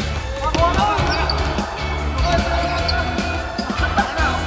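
A basketball bouncing on a hardwood gym floor as it is dribbled, over background music with a steady bass line.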